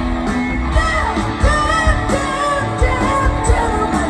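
Live rock band playing at full volume, with a woman's lead vocal over electric guitars and drums, recorded from the audience.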